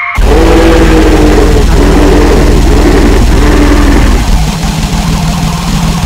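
Harsh noise recording: a sudden, very loud wall of heavily distorted electronic noise with a low pulsing buzz and harsh squealing tones. About four seconds in the squealing tones drop out and the texture thins to a lower, rougher drone.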